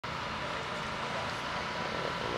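Steady outdoor background noise with a faint steady high hum running through it.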